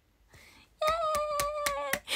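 A young woman clapping her hands about five times while holding one long, steady vocal cry.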